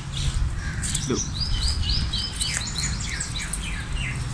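A bird singing: a quick run of about seven repeated high whistled notes, followed by a few lower falling notes, over a low rumble.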